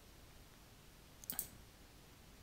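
Computer mouse button clicked, a quick pair of clicks about 1.3 seconds in, over quiet room tone.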